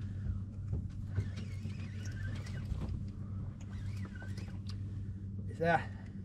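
A boat's engine idling with a steady low hum, under faint voices. A man speaks one short word near the end.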